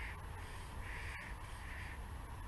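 A bird calling: three short calls a little under a second apart, the middle one the loudest, over a steady low rumble.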